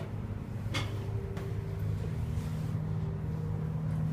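Schindler 300A hydraulic elevator car in motion: a steady low hum inside the cab, with a single sharp click a little under a second in.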